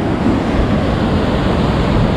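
Big waves breaking and washing foam up over a stony shore: a steady rush of surf.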